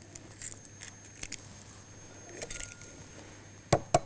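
Eggshell tapped twice sharply against the rim of a glass bowl near the end to crack it, after a few faint light clicks.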